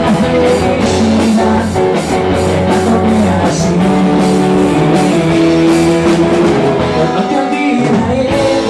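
Rock band playing live, guitars and drum kit, in a passage of the song with no sung words.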